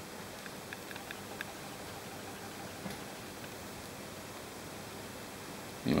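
Soft rustling of a terry towel being shifted by hands, with a few faint clicks in the first second or so, over a steady background hiss.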